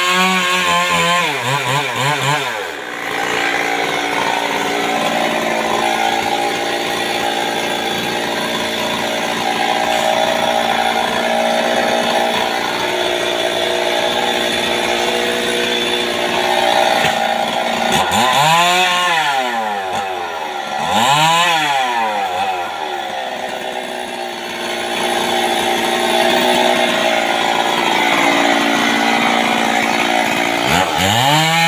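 Stihl MS 382 two-stroke chainsaw running steadily. The revs drop in the first couple of seconds. About two-thirds of the way through it is revved up and let back down twice, and it revs up again at the very end.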